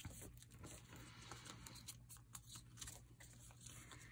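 Near silence, with faint rustling and small ticks of hands pressing and smoothing a paper envelope flat.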